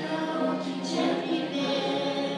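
A church choir singing a hymn together, the voices holding long notes.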